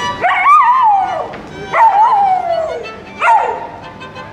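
A golden retriever howling along to a violin: three wavering howls, the first two about a second long and the last one short near the end, with the violin playing faintly underneath.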